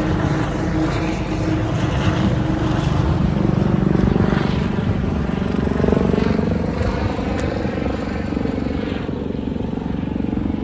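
Aircraft flying low overhead: a loud, steady engine drone with slowly shifting pitch bands, its higher part fading about nine seconds in.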